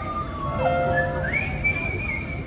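Recorded music over a stage sound system: a high whistled melody whose notes slide up and then hold, over lower sustained accompaniment notes.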